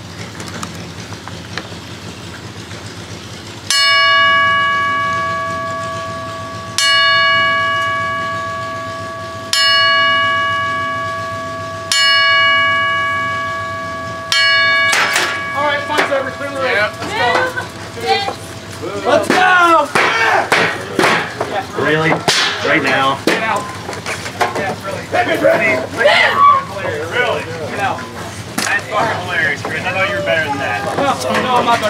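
Ring bell struck slowly for a memorial salute: sharp strikes about every two and a half to three seconds, each ringing on and fading before the next. After the last strikes, about halfway through, a louder, busier mix of voices takes over.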